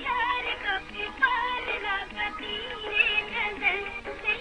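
Dance-song music with a singing voice whose pitch slides and wavers.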